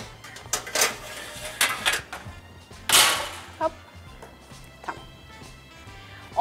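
Metal baking tray and oven rack clattering as a tray of cupcakes is slid into a wall oven, then the oven door shutting with a loud knock about three seconds in, over soft background music.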